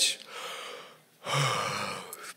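A man breathing heavily into a handheld microphone between sentences: a quieter breath just after the start, then a louder, longer gasp-like breath about a second in.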